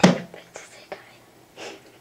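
Whispering and breathy sounds close to the microphone, in short bursts, after a sharp loud sound right at the start.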